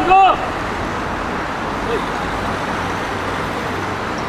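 Steady road traffic noise from passing cars, after the end of a loud shouted call right at the start.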